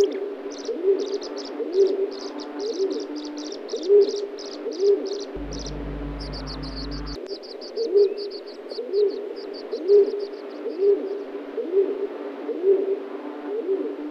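Birds calling: low cooing notes repeated about once a second, over a fast run of short high-pitched chirps that stops about eleven seconds in. A low hum comes in for about two seconds midway.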